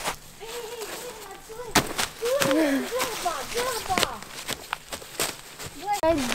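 Footsteps crunching on dry fallen leaves and twigs, with several sharp snaps, under a quiet talking voice.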